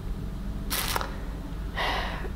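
A pause between sentences filled with two short breath sounds from a woman: a sharp one a little under a second in and a softer one near the end, over a low steady hum.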